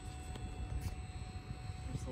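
Water Tech Volt FX-8Li battery-powered pool vacuum running submerged on the pool floor: a faint steady hum over an uneven low rumble, quiet.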